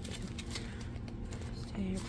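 A stack of paper one-dollar bills rustling as it is handled and fanned through by hand: soft, scattered crackles of paper.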